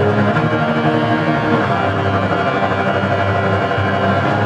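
Violas bowing sustained, overlapping notes, each held for about a second before changing.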